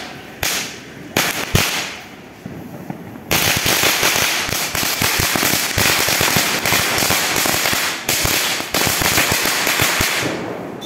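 Firecrackers bursting on the ground: a few separate bangs in the first three seconds, then a rapid, unbroken string of bangs from about three seconds in to the end.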